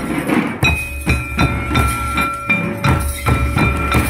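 Santali dance drums, a large kettle drum among them, played in a steady rhythm of about three strokes a second, with a ringing metallic tone held over the beat.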